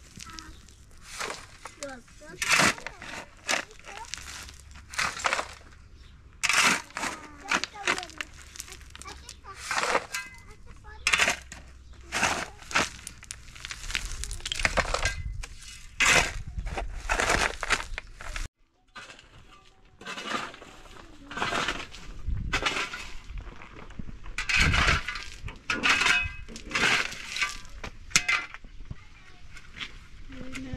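Steel shovel blade scraping and striking into rocky rubble and gravel, an uneven run of sharp scrapes and clinks of stone.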